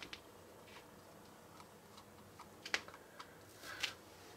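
Faint, irregular small clicks and taps of fingers handling a bobble-head puppy figurine and pressing small stick-on decorations onto it. The loudest click comes a little before three seconds in.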